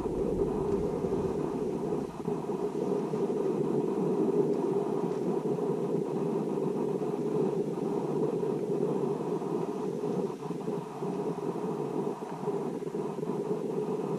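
Steady, dull rumbling noise with no clear events in it.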